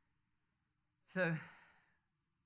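A man's voice: a pause of about a second, then a single drawn-out, breathy "So" that trails off.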